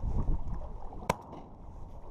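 Choppy sea water slapping against a layout boat's hull with wind on the microphone, and one sharp click about a second in as the shotgun is handled.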